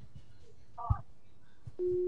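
A single telephone-line tone on the studio's phone-in line: one steady beep lasting under half a second near the end, the tone a call line gives as a caller comes through. About a second in there is a brief short squeak with a knock.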